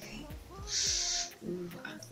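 A woman's wordless vocal sounds: a low falling hum, then a hiss about half a second long in the middle, and a short voiced sound near the end.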